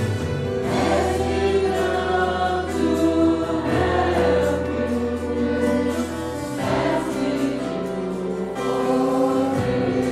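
A congregation singing a slow hymn together in held notes, accompanied by violins.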